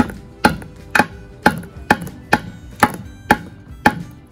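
A hammer knocking a small wooden perch peg into its hole in a wooden birdhouse: about nine sharp knocks at a steady rate of roughly two a second.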